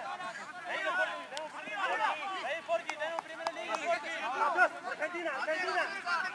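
Several rugby players' voices calling and shouting across the pitch during play, overlapping one another, with a few sharp knocks among them.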